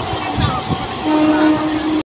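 Passenger train running, with a couple of low wheel thumps, then a train horn sounding one steady note from about a second in.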